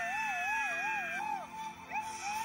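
Soundtrack music: a high voice holds one long note with wide, even vibrato, wobbling about four times a second, and fades about a second and a half in. A new note begins near the end.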